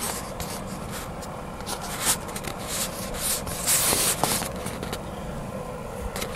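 Rubbing and scraping noise from a handheld phone's microphone being handled, in irregular short brushes, over a steady low rumble.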